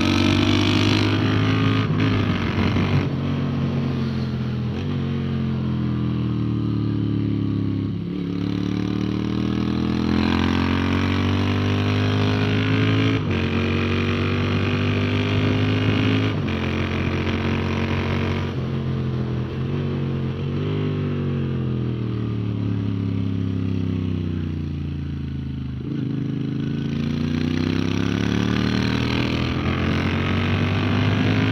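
Moto Guzzi V7's air-cooled transverse V-twin pulling hard through the gears, heard onboard over wind rush. The revs climb in each gear and step down at quick upshifts around the middle, sag and fall away for a few seconds past the twenty-second mark, then climb again near the end.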